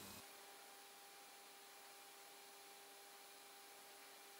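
Near silence: only a faint steady hiss with a thin electrical hum.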